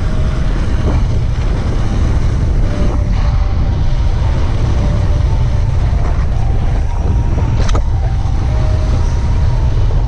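Wind rumbling on a helmet camera's microphone during a fast mountain-bike descent over groomed snow, with the rolling noise of the bike, a few sharp clicks and rattles, and a faint thin whine.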